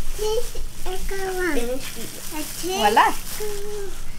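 A child's high voice making a few short, sliding, wordless vocal sounds over a steady faint hiss.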